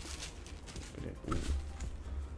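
Faint rustle of a thin black wrapping sheet being lifted and handled inside a cardboard box, over a low steady hum.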